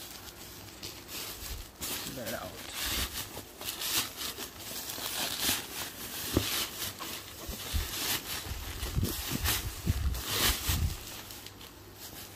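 Plastic courier mailer rustling and crinkling in bursts as a blanket in a fabric carry bag is dragged out of it, with the fabric bag scuffing and rubbing as it is handled.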